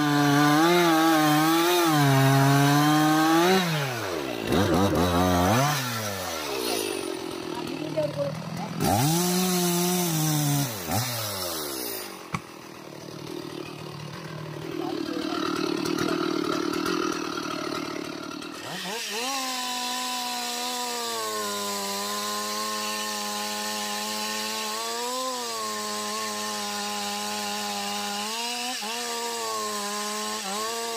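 Two-stroke chainsaw cutting into the base of an anjili tree trunk. Its engine pitch drops and climbs again several times in the first half as the cut eases off and resumes, then after a quick rise it runs steadily at high revs through the wood for the last ten seconds or so.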